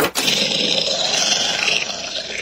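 A loud growling roar, rough and unpitched, starting abruptly and holding steady.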